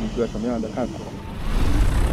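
A person laughs, then about one and a half seconds in the DJI FlyCart 30 delivery drone's propellers come in with a loud rush of rotor noise and downwash rumbling on the microphone.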